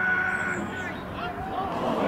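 Players and spectators shouting during a goalmouth scramble at an outdoor football match: one long held shout in the first half-second, then shorter calls near the end.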